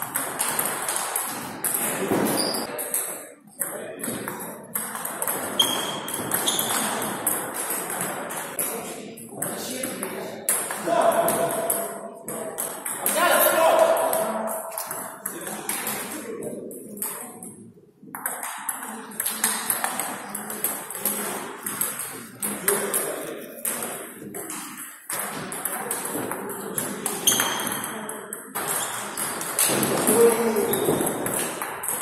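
Table tennis ball clicking off rubber-faced paddles and bouncing on the table in quick rallies, with short breaks between points. Voices carry in the hall behind the play.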